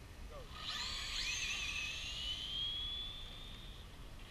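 Electric RC drag cars launching off the line about a second in: the high whine of their motors, rising in pitch as they accelerate away down the strip.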